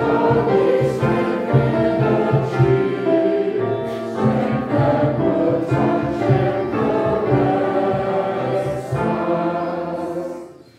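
Congregation and choir singing a hymn together, many voices in unison and harmony.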